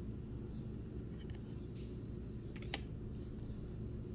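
Trading cards being handled and shuffled in a stack, a few soft clicks and slides of card on card over a low steady hum.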